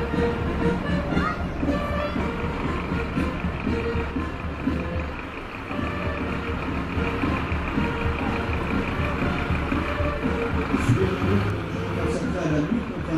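Fire engines driving slowly past with their diesel engines running: first a CCRM water tanker, then a Scania aerial ladder truck, over steady background music.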